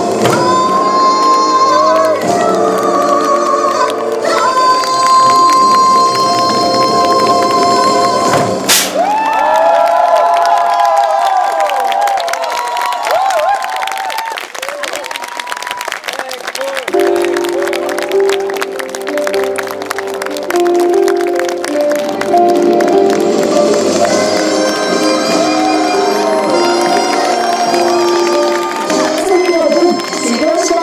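Korean traditional folk music with buk barrel drums beaten with sticks: held melodic tones over the drumming in the first few seconds, then dense drumming. Voices shout or call out over the music twice, once about ten seconds in and again near the end.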